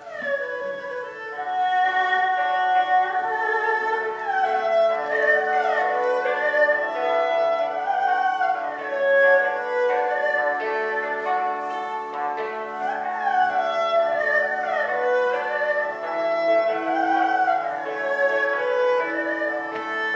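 Erhu playing a slow Chinese melody with many sliding notes, over a yangqin accompaniment whose hammered strings ring on underneath.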